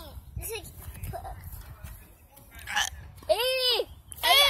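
A girl's voice without clear words: a short vocal sound about half a second in, then a louder drawn-out exclamation near the end that rises and falls in pitch. A low rumble runs underneath.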